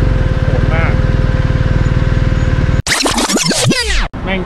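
A BMW GS adventure motorcycle's engine idles with a steady, even pulse. It cuts off abruptly near the end and is replaced by an edited-in transition effect of several quick falling, sweeping tones.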